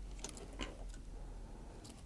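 Faint handling sounds: a few small clicks and taps, most in the first half, as fingers press and align a circuit board and ribbon cable on the back of a camera touchscreen.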